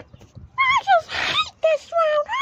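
A high-pitched, cartoonish voice making a run of short wordless cries that rise and fall in pitch, with a brief hiss about a second in.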